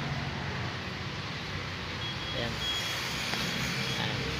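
Road traffic on the street below: a steady rumble of passing engines. In the second half a thin, high beeping tone sounds on and off.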